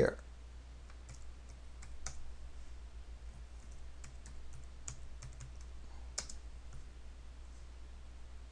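Computer keyboard being typed on: slow, irregular single keystrokes clicking, with a steady low hum underneath.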